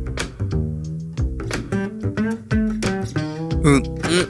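Background music with plucked guitar.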